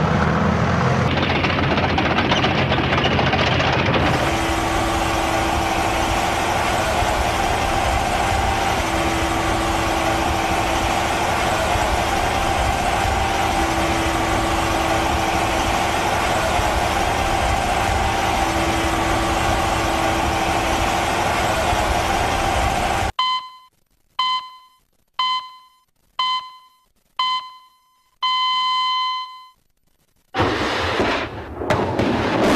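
Heavy tracked missile launcher vehicle's engine running steadily, then a steady machinery hum with a faint held tone while the missile is raised upright. Near the end come seven short electronic beeps about a second apart, a pre-launch countdown.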